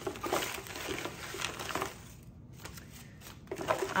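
Tea packaging being handled on a table: crinkly rustling with light taps for about two seconds, then it goes quiet.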